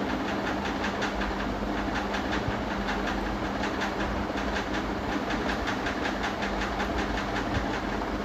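Steady machine-like running noise with a rapid, even ticking, about five ticks a second, over a low hum.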